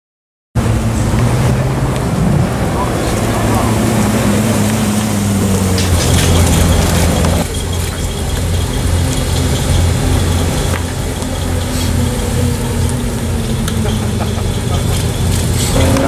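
Lexus LFA's V10 engine running at low revs as the car rolls slowly, a steady low engine note with slight rises and falls in pitch. Background voices are mixed in.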